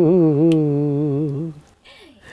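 A man singing a devotional bhajan unaccompanied. He holds a long, wavering final note that dies away about one and a half seconds in.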